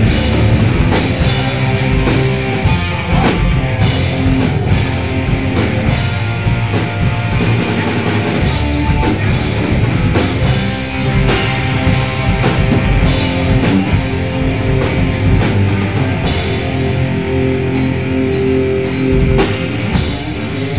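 A rock band playing loudly and continuously in a heavy, metal style: a drum kit with dense cymbal hits and distorted electric guitar.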